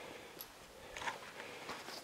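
A few faint footsteps on a debris-strewn floor, as short scattered crunches and clicks.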